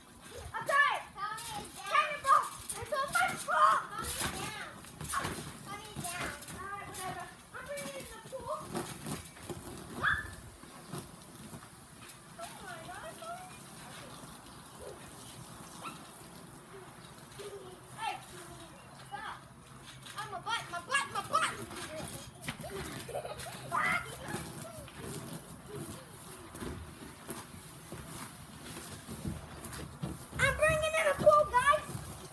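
Children's high-pitched voices calling out and shouting as they play, in lively bursts through the first ten seconds and again around twenty seconds in, with quieter stretches between.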